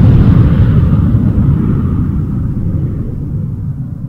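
Deep rumble that fades slowly: the dying tail of a boom sound effect.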